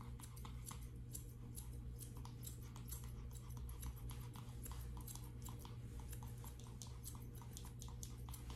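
Grooming scissors snipping a Yorkshire Terrier's coat in short, irregular cuts, several a second, faint against a low steady hum.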